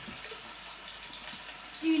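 Oxtail browning in hot oil in a pan: a steady sizzle. A voice starts just at the end.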